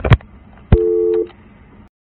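A sharp click on an office desk phone as the call is ended, then a steady two-note telephone tone sounding for about half a second, three-quarters of a second in, with a few faint clicks after it.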